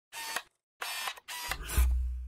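Logo-intro sound effects: three short mechanical, camera-like whirring clicks in quick succession, then a deep low boom that swells near the end and fades away.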